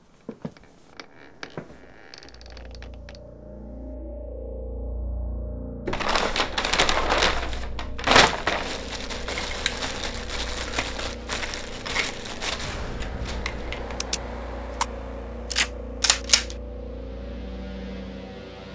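A low, ominous film-score drone swells under the crinkling of a clear plastic bag as a handgun is unwrapped from it. Several sharp clicks follow near the end.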